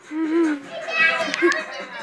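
A young child's wordless voice while playing: a short wavering call, then a louder high-pitched squeal about a second in.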